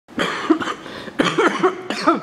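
A person coughing in two bouts, about a second apart.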